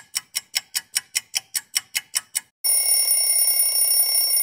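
A clock-ticking sound effect, about five even ticks a second, marking the freeze pause in the music. About two and a half seconds in, it gives way to a loud, steady alarm-clock-like ringing.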